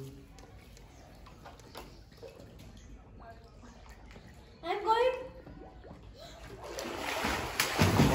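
Swimmer's front-crawl strokes splashing in a small pool, starting about seven seconds in and growing loud near the end, over faint water lapping. A short voice calls out about five seconds in.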